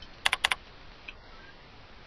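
A quick run of about four computer keyboard keystrokes within a third of a second, then faint room tone.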